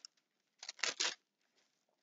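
Bible pages being turned: a few short, faint papery rustles from about half a second to a second in.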